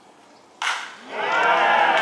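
A baseball bat cracks against a pitched ball about half a second in. A crowd of spectators then breaks into loud shouting and cheering as the ball is put in play.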